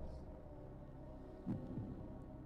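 Steady low hum of room tone, with one short, low, voice-like sound about one and a half seconds in.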